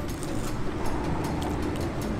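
Steady low rumble of distant road traffic in the outdoor background, with a few faint ticks over it.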